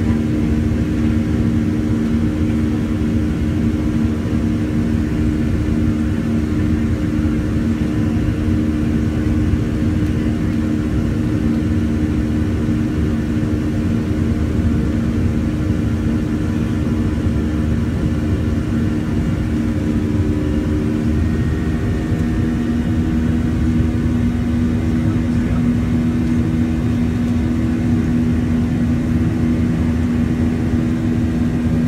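Jet airliner's engines heard from inside the cabin while climbing out after takeoff: a loud, steady drone with a strong low hum of two steady tones over a rumble. A little past two-thirds of the way through, the hum shifts slightly in pitch.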